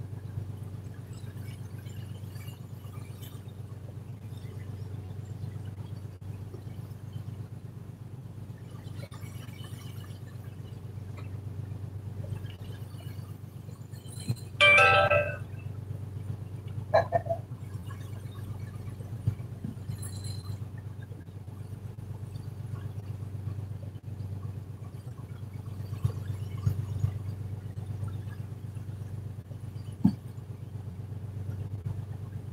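A fishing boat's engine runs steadily under way with a low, even drone. About halfway through there is a short, loud pitched sound, and a fainter, shorter one follows a couple of seconds later.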